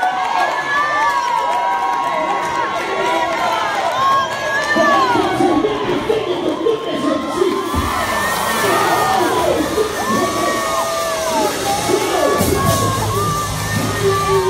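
A live audience cheering and screaming, many high voices at once. A low bass comes in underneath about eight seconds in, and music begins near the end.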